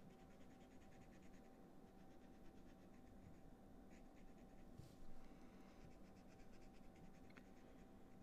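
Faint rapid scratching of a Copic marker's nib stroking across cardstock as it lays down colour, with a brief soft bump about five seconds in.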